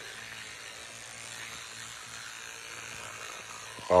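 Electric toothbrush buzzing steadily with its head inside the mouth, brushing the teeth.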